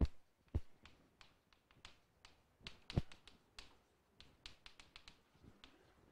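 Chalk on a blackboard: a run of irregular short taps and clicks as words are written, the strongest at the very start and about halfway through.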